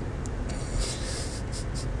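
Steady low road rumble inside a moving car's cabin, with a short breathy, scratchy hiss and a few ticks about halfway through.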